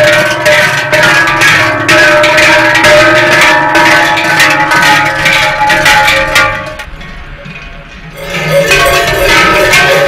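Large Swiss cowbells (Schellen) worn on the body, clanging continuously as their wearers walk and swing them: a dense jangle of many overlapping ringing tones. The ringing drops away for over a second about two-thirds through, then comes back full.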